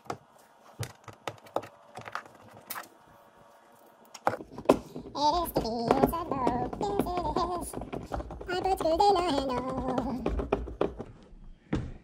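Clicks, taps and thunks on a plastic kayak hull as a grab handle is fastened through the deck from inside a hatch. From about four seconds in, a louder wavering voice-like sound runs for several seconds.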